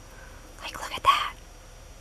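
A soft, short whisper about a second in, against a quiet room.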